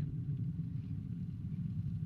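Steady low rumble of a Vega rocket's P80 solid-fuel first stage burning in flight.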